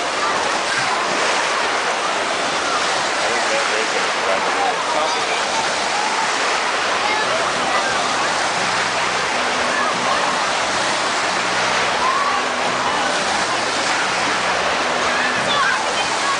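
Wave pool surf: a steady wash of rushing and breaking water, with the voices of many swimmers mixed in.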